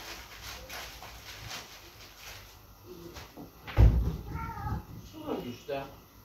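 A heavy thump about four seconds in, followed by a few short, high-pitched vocal sounds whose pitch bends up and down.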